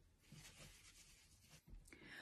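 Near silence: room tone with a few faint, soft rubbing sounds, about half a second in and again near the end.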